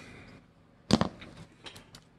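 A single sharp knock about a second in, then a few light clicks: a folding knife being set down on a cutting mat and handled.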